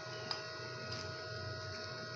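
A metal spoon clicking lightly against a cut-glass bowl while dry ground spices are stirred, once clearly about a third of a second in and once faintly later, over a steady electrical hum.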